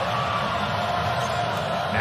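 Steady crowd noise from a basketball arena during live play.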